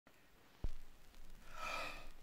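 A soft low thump about half a second in, then a faint sigh from a man near the end.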